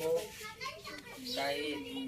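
Speech: a young voice talking quietly, with a short phrase at the start and a longer stretch in the second half.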